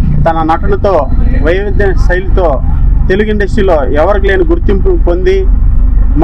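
A man speaking into a handheld microphone, over a steady low rumble.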